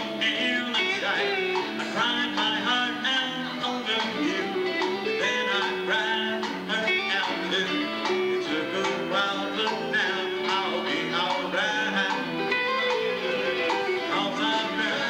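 Live country band playing an instrumental break, with a bending guitar lead over the rhythm section; the recording is thin, with almost no deep bass.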